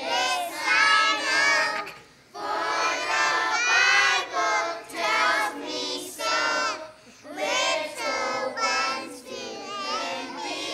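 A group of children singing a song together, in sung phrases with short breaths about two seconds in and again near seven seconds.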